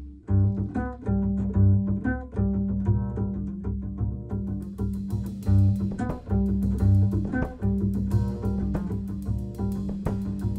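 Upright double bass played pizzicato, a line of plucked low notes, with a light drum kit accompaniment of soft strikes and cymbal.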